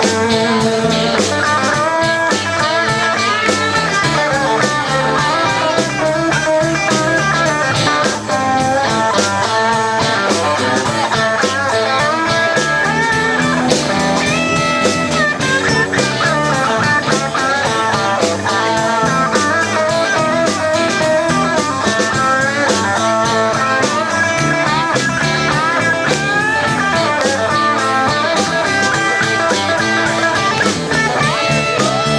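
Live electric blues-rock band playing an instrumental stretch: a lead electric guitar plays bending, sliding lines over rhythm guitar, electric bass and drum kit.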